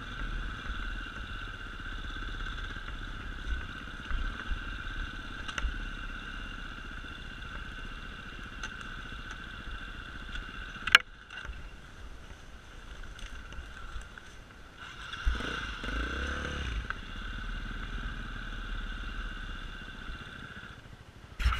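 Off-road enduro motorcycle engine running steadily under the rider as it climbs a forest trail, heard from a helmet camera with wind rumble on the microphone. A single sharp knock comes about eleven seconds in, and the engine revs up again a few seconds later.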